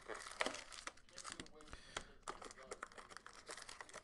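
Foil trading-card packs crinkling and rustling as they are handled and pulled from a cardboard hobby box, with many small irregular crackles and clicks.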